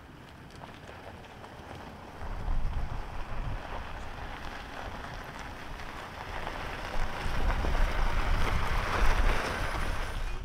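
Pickup truck driving on a gravel road: a steady hiss and crunch of tyres on gravel with a low rumble, swelling from about two seconds in and loudest near the end.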